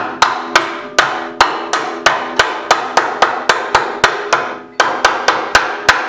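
Rubber mallet striking a tubular steel upper control arm to drive it down over its frame studs, in a steady run of about three hits a second. A faint low ring from the steel hangs between the blows.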